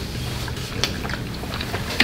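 People chewing mouthfuls of burger, with a few soft mouth clicks over a steady low hum.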